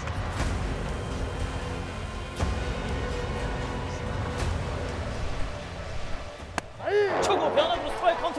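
Ballpark crowd noise under background music. About two-thirds of the way through comes a single sharp pop as the pitch smacks into the catcher's mitt for a strike, followed by shouting voices.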